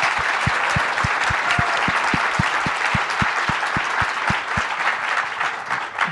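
Audience applauding, with a steady low thump beneath it about four times a second for the first few seconds. The applause thins out near the end.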